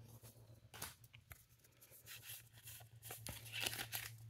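Faint tearing and rustling of a foil booster-card wrapper being opened, with soft taps of the cards being handled, a little louder near the end.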